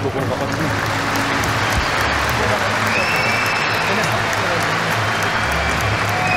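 A large audience applauding steadily.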